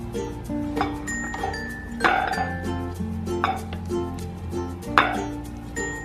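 Light background music, with a metal spoon knocking and scraping against a pot and a ceramic bowl as macaroni and cheese is scooped out; the two loudest knocks come about two and five seconds in.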